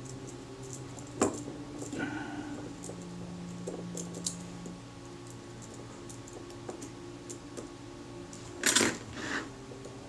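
Faint clicks and small metallic ticks of steel tweezers against the parts of a Pronto SBS leaf shutter as a fine spring is worked onto its studs, over a steady low hum. A louder, brief rustling noise comes near the end.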